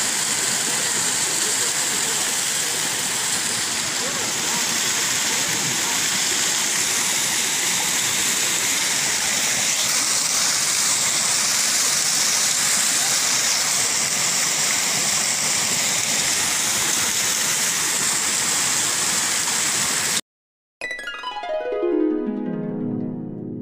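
Small waterfall cascading over rock, a steady rushing of falling water that cuts off suddenly near the end. After a short gap, plucked-string music begins with a falling run of notes.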